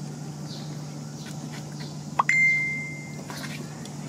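A single high beep lasting about a second, just after a short rising chirp, over a steady low hum.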